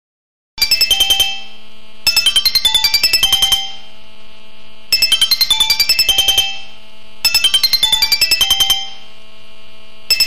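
Digital alarm clock going off at 4:00: a fast electronic beeping tune repeated in phrases of one to one and a half seconds with short gaps, starting about half a second in, over a low steady hum.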